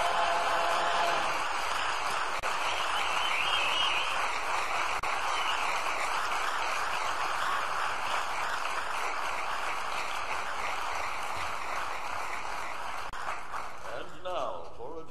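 A barbershop chorus's closing chord ends about a second in, giving way to steady audience applause.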